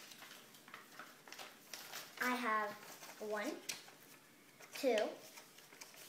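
Sheet of paper folded into a small book, rustling and crackling with small clicks as it is handled and its pages are turned, under a child's voice that begins counting the pages.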